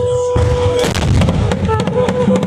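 Ceremonial drumming with heavy, dense beats. A single held high note rides over it, breaks off just before a second in and comes back near the end.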